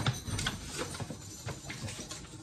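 Lechuza Pon, a granular mineral substrate, rattling and clicking irregularly as handfuls are scooped out of its plastic bag.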